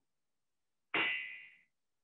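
A single ringing clang or ding about a second in, fading out in under a second.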